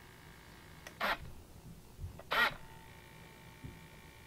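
Small RC hobby servo whirring twice, about a second and a half apart, each run brief, as it swings the model wing's flaps through a soldered pushrod linkage.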